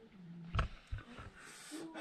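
A man's short, low closed-mouth hum, then a sharp click and a soft breath.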